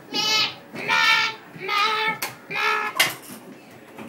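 A child's voice giving four drawn-out, high-pitched cries of about half a second each, in mock panic during a pretend emergency; a sharp click sounds about three seconds in.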